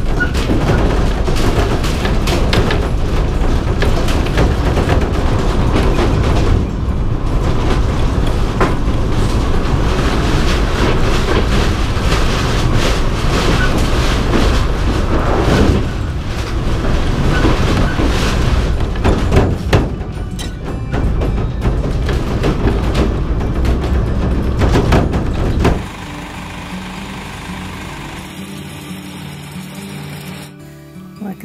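Road rumble inside the stripped vintage Sterling Europa caravan shell as it is towed, loud and continuous, with frequent knocks and rattles from the bare body and framing. Near the end it drops away to music.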